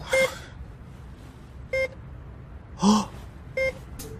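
Three short electronic beeps, evenly spaced about 1.7 seconds apart, with a short voiced grunt just before the third.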